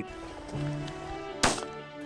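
Background music with a single sharp shotgun shot about one and a half seconds in, fired at a flushed prairie chicken.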